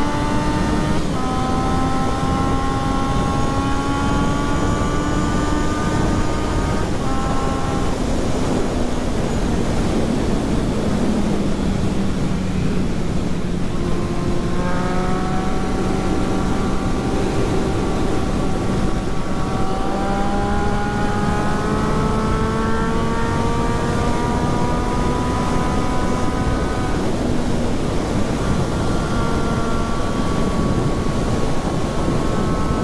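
Triumph Street Triple 675's inline three-cylinder engine pulling at road speed, its note climbing steadily with a brief upshift dip just after the start, dropping away about a quarter of the way in, then building again through the second half. Heavy wind rush over the microphone.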